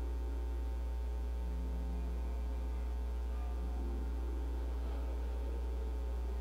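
Steady low electrical mains hum, with faint, indistinct tones underneath.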